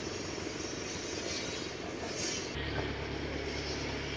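Outdoor background noise with a steady low rumble, which grows stronger about two and a half seconds in.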